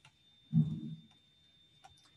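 Quiet pause with a short low murmur about half a second in, then two faint clicks near the end from a computer mouse, over a faint steady high-pitched whine.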